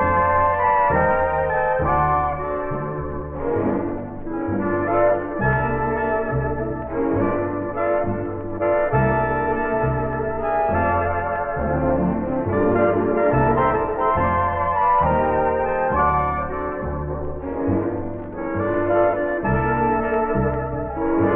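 Instrumental passage of a vintage 1930s–40s swing band recording: the brass section plays over a steady bass line of about two notes a second.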